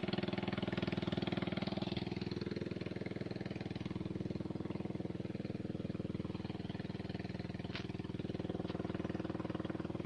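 A boat's engine running steadily with a fast, even beat. Two short clicks come near the end.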